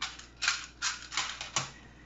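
About five sharp clicks and clatters, roughly half a second apart, as a small clear plastic box of push pins is handled and moved on a wooden board.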